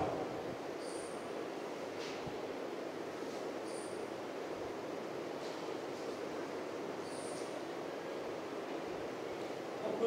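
Steady background hiss of outdoor ambience, broken three times by a short, very high-pitched chirp, roughly three seconds apart.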